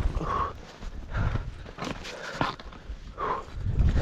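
Skis turning through deep powder snow, each turn a soft rush of snow, with a few sharp clicks and the skier's hard breathing in rhythm, about one every second. A steady low rumble of wind on the microphone runs underneath.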